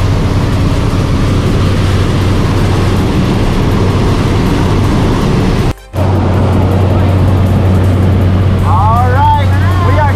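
Steady drone of a jump plane's engine and propeller heard from inside the cabin, with rushing air noise. The sound cuts out briefly just before six seconds in, and voices call out over the drone near the end.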